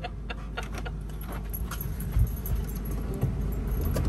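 Light metal jingling and clinking in short irregular bursts, over a low steady rumble that slowly grows louder.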